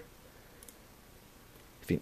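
Quiet room tone with a faint, short click about two-thirds of a second in, from the laptop's controls being clicked. A man's voice begins just before the end.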